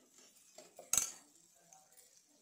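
A steel spoon stirring diced onions in a nonstick kadai, with soft scraping, then one sharp metallic clink about a second in as the spoon knocks against the pan.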